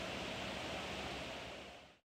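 Steady background room hiss with no other sound, fading out to silence near the end.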